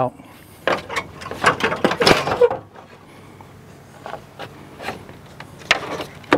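The truck's plastic grille being pried and pulled free of its retaining tabs: a run of sharp plastic clicks, snaps and scraping rub, busiest in the first couple of seconds, then a few scattered clicks near the end.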